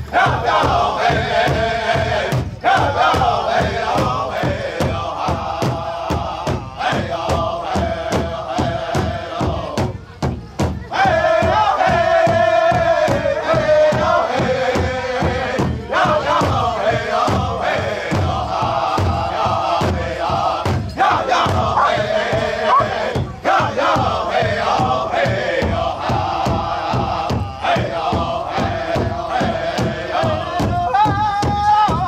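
Powwow drum group singing a women's traditional contest song in unison, several voices chanting over a steady beat struck together on a large hand drum. The singing breaks briefly about ten seconds in, then comes back loud.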